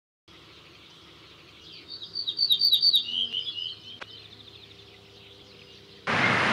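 A songbird singing a fast trill of high, rapidly repeated notes that steps down in pitch partway through, over a faint steady background hiss; a single short click about four seconds in.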